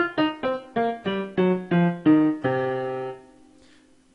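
Piano sound from the Windows built-in Microsoft MIDI synthesizer playing a blues scale downward, one note at a time, about four notes a second. It ends on a longer low note that dies away about three seconds in.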